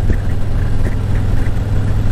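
A 2017 Harley-Davidson Ultra Classic's Milwaukee-Eight 107 V-twin runs steadily while riding at road speed, with wind noise rushing over it.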